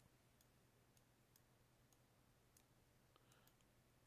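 Near silence: faint room tone with a low hum and about eight faint, scattered clicks.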